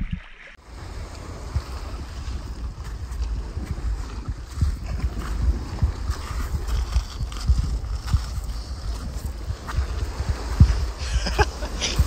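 Wind buffeting the microphone: a gusting low rumble that rises and falls throughout.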